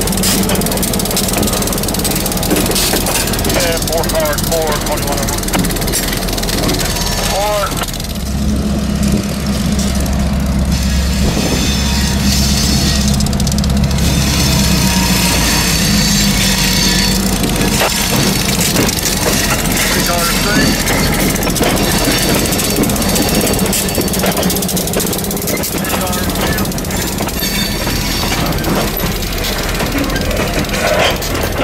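Diesel locomotive's engine running as it moves a cut of covered hopper cars during switching, its low engine note louder and deeper for about ten seconds in the middle. The cars' wheels rumble on the rails.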